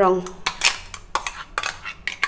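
Metal spoon scraping and knocking against the inside of a stainless steel mixer-grinder jar while blended papaya pulp is scraped out, giving a few sharp clinks about half a second apart.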